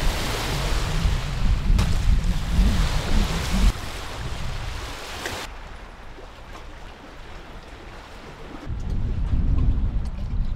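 Wind buffeting the microphone over choppy lake water, with a deep rumble and steady hiss. The gusts are strongest for the first few seconds, ease off in the middle, and pick up again near the end.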